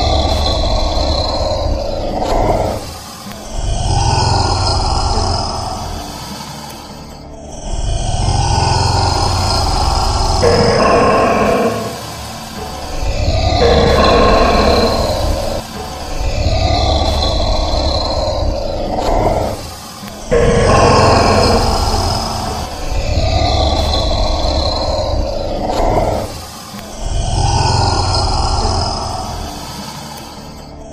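Deep growling grunts repeated about every two to three seconds, the same call looped over and over, presented as the voice of a Komodo dragon.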